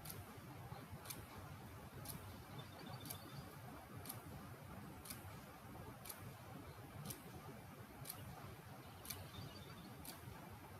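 Faint ticking of a clock, one sharp tick about every second, over low room hiss.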